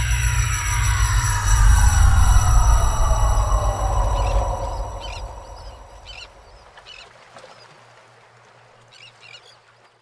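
Animated logo sting sound effect: a deep rumble under several tones that glide steadily downward together, loudest about two to three seconds in, then fading out with a few faint twinkling chimes.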